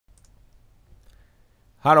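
A few faint computer-mouse clicks over a quiet room, then a man's voice saying "hello" near the end.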